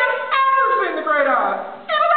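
Cast voices singing in high, sliding notes, with a short break near the end.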